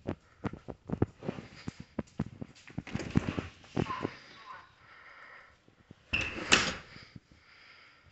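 A back door being opened amid footsteps and small handling knocks. About six seconds in, a short louder burst with a squeak as the door swings shut.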